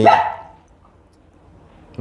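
A Rottweiler gives one short, loud bark at the very start, then quiet.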